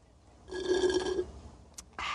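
Slurping through a drinking straw at the bottom of a nearly empty soda can: about a second of gurgling air and last drops, then a brief click near the end. The slurp is the sign that the can is empty.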